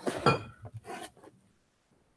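A few brief, soft knocks and a clink as a glass bottle of tonic water is handled, all within the first second and a half.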